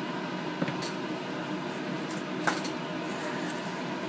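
Small plastic culture vessels and steel forceps being handled, giving a few faint clicks and taps, the clearest about two and a half seconds in, over a steady hiss.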